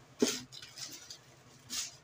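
Plastic packaging of disposable pee pads crinkling as the pads are pulled out by hand, in two short bursts: a loud one just after the start and a softer one near the end.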